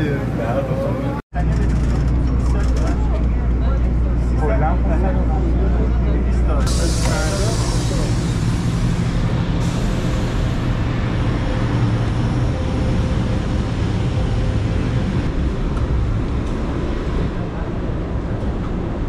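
Airport apron shuttle bus running with a steady low engine rumble and passengers' chatter. About seven seconds in, the rumble gives way to a brighter, hissy background with voices.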